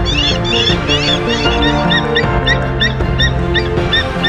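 Background music with held notes, over which a bird of prey calls in a quick, even series of short, sharp notes, about four a second.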